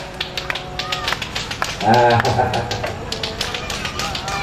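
Rebana frame drums being struck in sharp, irregular slaps, several a second, not yet in a steady rhythm. A man's brief "ah" about two seconds in.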